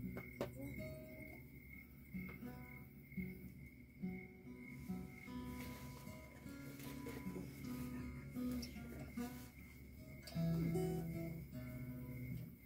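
Acoustic guitars playing a slow, picked instrumental introduction to a folk song, single notes ringing and fading, growing louder near the end.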